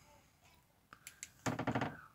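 Quiet room, then a few light clicks about a second in from the jar being handled, followed by a brief half-second of a man's voice near the end.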